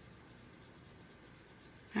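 Faint, quick strokes of a water brush's bristles scrubbing on paper, dissolving a swatch of water-soluble wax pastel.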